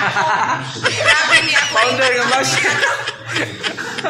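A man chuckling and laughing behind his hand while a woman talks loudly over him.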